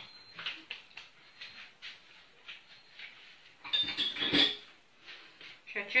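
Light clinking and knocking of dishes and cutlery in a kitchen, with a louder clatter about four seconds in.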